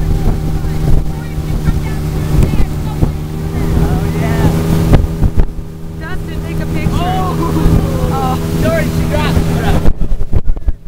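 Motorboat engine running steadily at speed while towing a water-skier, a constant low drone under the rush of wind on the microphone and churning wake water.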